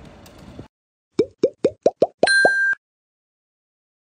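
Cartoon-style editing sound effect: a quick run of about seven bubbly pops, each sliding down in pitch, with a short bright ding over the last two. Before it the scene's sound cuts off into silence.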